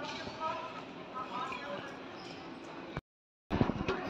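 Faint chatter of distant voices over the steady hum of a large airport terminal hall. Near the end the sound drops out completely for half a second at an edit, then a few light knocks follow.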